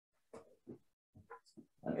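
Mostly quiet, with about five faint, short sounds of a person moving about and handling objects.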